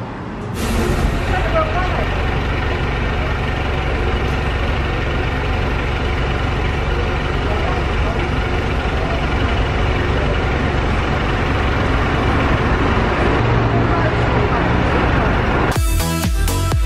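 City street traffic noise, with a heavy vehicle's engine rumbling nearby. Music starts right at the end.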